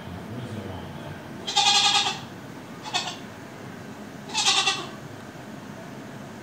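Billy goat bleating: two long bleats about three seconds apart, with a short bleat between them.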